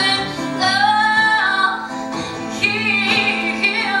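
A woman singing live, with long held notes that slide in pitch, accompanied by an acoustic guitar.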